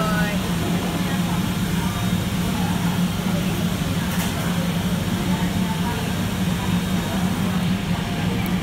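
Cafe room ambience: a steady low hum with faint chatter of voices in the background.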